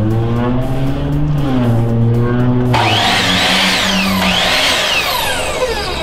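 Craftsman sliding compound miter saw switched on about halfway through and left running, its motor starting suddenly with a whine that rises and falls, over background music.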